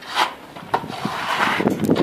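A hand trowel scraping wet render over a block wall, working it into a strip of fibre mesh: one short stroke just after the start, then a longer run of rasping strokes.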